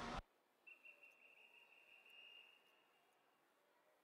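Near silence. The pool-deck sound cuts off a moment in, and after it there is only a faint, thin, steady high tone lasting about two and a half seconds.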